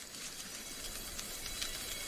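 Steady hiss with faint, scattered ticks.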